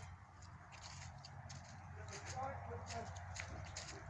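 Faint, distant voices over a low, steady background hum, with a few faint ticks.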